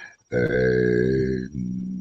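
A man's drawn-out hesitation sound, a held "eee", steady in pitch for about a second, then sinking to a lower, quieter held hum.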